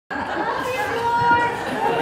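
Several people talking at once in a large room, a hubbub of chatter starting abruptly at the outset.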